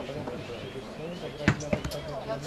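A football kicked hard about one and a half seconds in, a sharp thud, with a lighter touch of the ball a moment later. Players' voices call faintly throughout.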